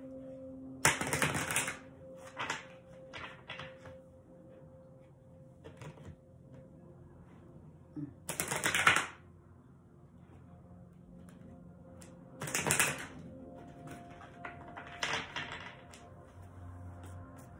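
Large oracle cards being riffle-shuffled in two halves: several short bursts of cards flicking together, the loudest about halfway through.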